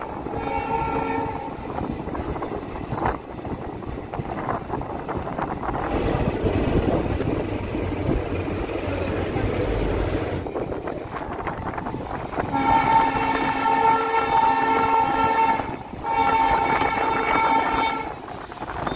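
The moving train's horn sounds in steady blasts: one ends about a second in, then two long blasts come near the end. Between them is the rumbling running noise of the train.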